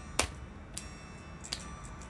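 Three sharp clicks or taps about three quarters of a second apart, the first much the loudest, each followed by faint ringing tones.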